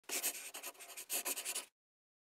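Pen scratching across paper in two runs of quick strokes, stopping suddenly after about a second and a half.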